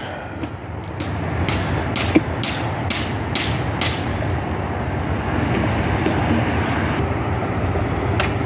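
A steady low rumbling noise with a few brief clicks in the first half.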